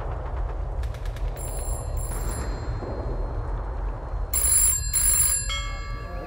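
A telephone bell ringing twice in quick succession about four and a half seconds in, over a steady low rumble.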